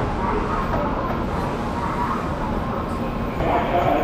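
Steady rumble and noise of a busy railway station platform, with indistinct voices that grow louder near the end.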